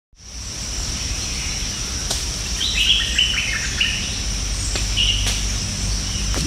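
Tropical forest ambience: birds chirping in a quick run of short calls that step down in pitch, over a steady high-pitched insect drone and a low rumble, with a few sharp clicks.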